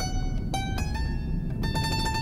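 Fretted clavichord, a 1978 Christopher Clarke copy, sounding single notes pressed one after another, each a step higher than the one before, with a small click at the start of each note.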